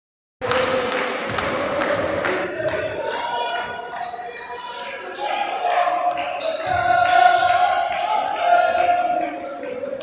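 A basketball bouncing repeatedly on a hardwood court as players dribble, with spectators' voices in the arena.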